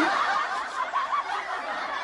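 Laughter from a group of people, many voices overlapping at once: a canned laugh track.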